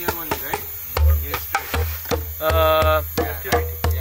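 Djembe hand drumming: a steady run of deep bass strokes and sharper slaps, about four or five strokes a second, a simple rhythm played as a demonstration. A voice holds one note for about half a second midway through.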